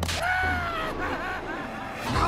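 A short laugh, then a long, high yell that falls slightly in pitch over about a second and trails off into weaker cries.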